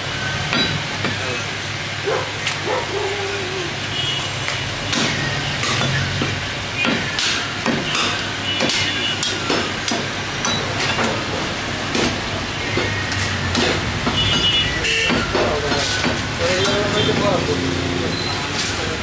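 Heavy cleaver chopping beef on a wooden chopping block: irregular sharp knocks, roughly one every half second to a second. A steady low hum runs underneath.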